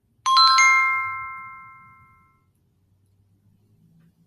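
Short electronic chime: a few bell-like notes struck in quick succession, ringing out and fading over about two seconds. It signals the end of the page in an auto-reading textbook app.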